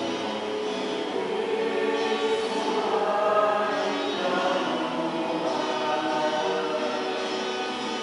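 A church choir singing, several voices holding long sustained notes.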